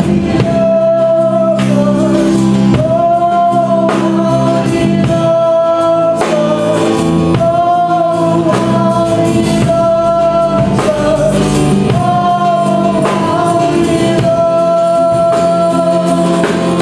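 Live contemporary worship song: a woman and a man singing together into microphones, holding long notes with vibrato, over strummed guitars and a steady beat.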